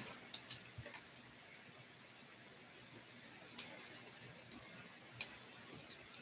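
A few small light clicks, then three louder sharp clicks in the second half, from small electronic parts and hand tools being handled on a workbench.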